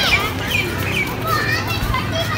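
Many children's high voices calling and chattering over one another, as children play in a crowd.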